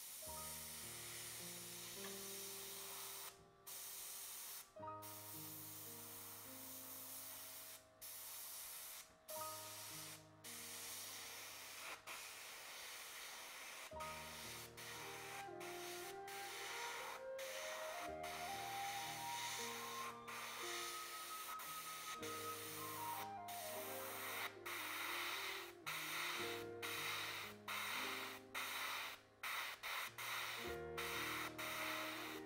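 Iwata Eclipse airbrush hissing as it sprays, the air cutting off for brief moments many times as the trigger is worked, under soft background music with a slow melody.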